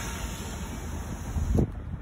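Car running at low speed with an open window, a steady low rumble under wind noise on the microphone, with a single short knock about a second and a half in.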